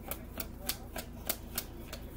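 A deck of cards being shuffled by hand, making a quick, regular clicking, about three clicks a second.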